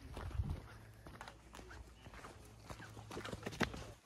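A dog tugging on a rope toy, its paws scuffing and tapping on dirt and grass in irregular small taps. A low rumble comes near the start.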